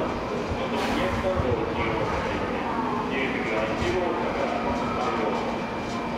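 A 700 series Shinkansen train running as it pulls out over the station tracks, with a steady hum under it and people's voices over it.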